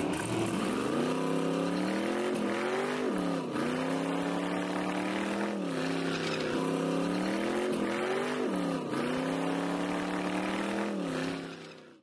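Car engine held at high revs during a burnout, its pitch steady but briefly dipping and recovering several times; it fades out near the end.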